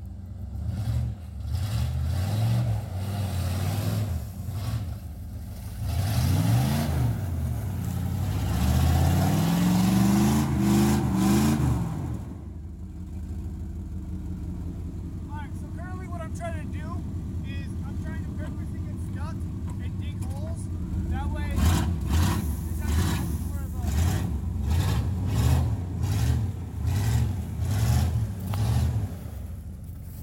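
Chevy K1500 pickup engine revving hard on snow, rising and falling for the first dozen seconds, then settling to a steadier lower note with a few short high chirps. Near the end it revs in short repeated pulses about once a second, the tires spinning in the snow.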